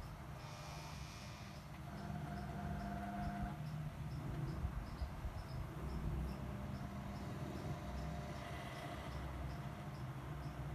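Steady low hum from the grid-dip oscillator's old mains power-supply transformer. Over it runs a faint high chirp repeating about three times a second, and a steady whistling tone sounds twice, each for a second or so.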